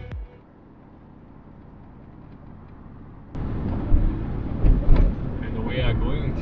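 Road noise inside a moving car's cabin on a wet road. It is faint at first, then a louder, steady rumble with tyre hiss starts suddenly about three seconds in, with a few short thumps.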